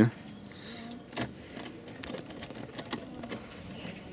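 A few light, scattered clicks and rattles from the car's controls being worked by hand inside the cabin.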